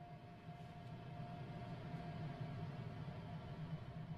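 Piano playing a low, rumbling passage in the bass that swells over about two seconds and then fades, with a faint steady high tone above it.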